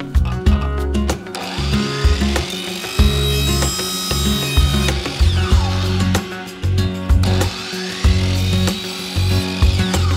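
Background music with a steady bass beat. Under it, a DeWalt sliding miter saw cuts PVC pipe in two spells: it winds up about a second in, spins down around the middle, runs again, and spins down near the end.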